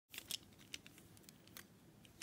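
Faint clicks of plastic-and-metal Beyblade Burst tops knocking together as they are handled in the fingers. There is a quick pair of clicks early, another just before the first second, and a single click about a second and a half in.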